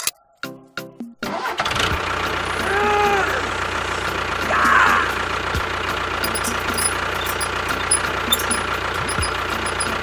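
A motor starts about a second in and then runs steadily, with a brief wavering tone near three seconds and a louder burst near five seconds.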